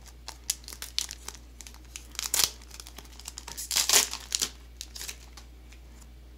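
Foil wrapper of a Digimon Card Game booster pack crinkling in short irregular bursts as it is handled and torn open, loudest about two and four seconds in.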